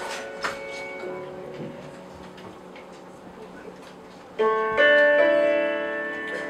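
Piano chords ringing out and slowly fading, then new chords struck about four and a half seconds in and layered on a moment later.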